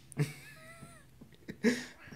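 A cat giving a short meow with a slightly falling pitch, between two brief, louder noises, one near the start and one near the end.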